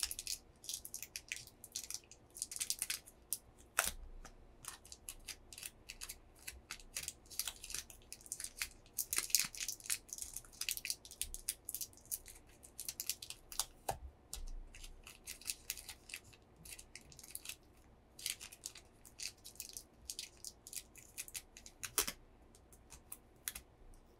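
Close-miked fingertips and fingernails pinching and rubbing a small thin item, making a dense, irregular run of crisp crackles and clicks, with a few sharper clicks scattered through.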